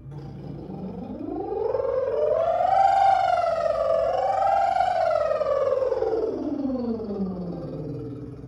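A woman's lip trill, lips buzzing on one breath, sliding in one smooth pitch glide up about two octaves, wavering at the top, then sliding back down: a siren-style vocal warm-up.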